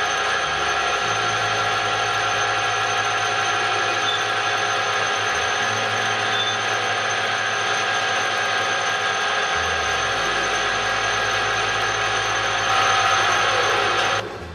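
Metal lathe running steadily at speed, a constant mechanical hum with high, steady whining tones from its drive. A center drill in the tailstock is boring a pilot hole into the end of a spinning steel bar.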